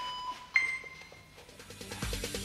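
HIIT interval timer app beeping. A lower tone fades out at the start, then a sudden higher beep about half a second in holds for about half a second, marking the end of the countdown and the start of the work interval.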